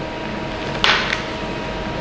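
A short slurping suck through a straw at a frozen drink, about a second in, over a steady electrical hum.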